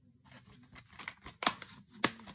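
Plastic DVD case being handled and closed: crinkling and rustling of the plastic, with a sharp click about one and a half seconds in as the case snaps shut.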